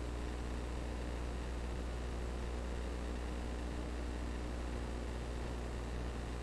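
Steady electrical hum and hiss with no other sound: mains hum and background noise of the recording.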